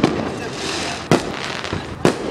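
Firecrackers going off: a sharp bang at the start and another about a second in, over a dense, noisy background.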